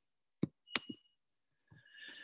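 Two short clicks, about a third of a second apart, from a computer mouse, with quiet between them.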